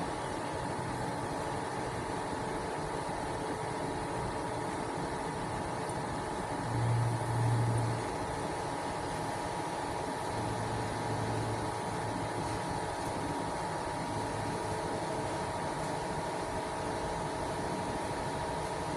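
MultiPro MMAG 600 G-TY inverter welding machine switched on but idle, with no arc struck: its cooling fan runs with a steady whir and a faint steady hum. A low hum swells briefly about seven seconds in and again around ten to eleven seconds.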